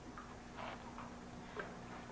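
Quiet pause: a faint steady hum of room tone with a few soft, faint sounds scattered through it.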